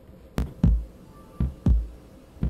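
Song intro beat: two low double thumps like a heartbeat, lub-dub, about a second apart.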